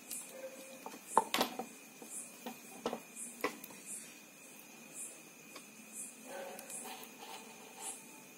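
Faint rubbing and rustling of shopping-bag cloth and thread handled between fingers as the thread is wound and tied around a cloth-wrapped bead, with a few light clicks about a second in and again around three seconds in.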